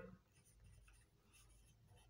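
Faint scratching of a marker pen writing in a few short strokes.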